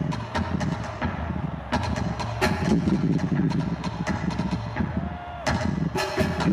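Large taiko-style drums beaten with sticks by several players together: a fast, uneven run of heavy strikes that eases slightly near the end and then comes back with a hard hit. Heard from the stadium crowd in a rough amateur recording.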